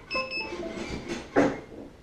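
DJI Phantom 2 remote controller switching on: a short series of electronic beeps stepping in pitch. A brief louder sound follows about one and a half seconds in.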